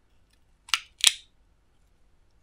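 Two sharp plastic clicks about a third of a second apart, a little under a second in: small plastic pots of glow-in-the-dark nail pigment knocking against each other and their plastic tray as they are handled.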